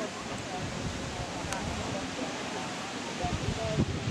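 Indistinct background voices of people talking, heard over a steady outdoor hiss.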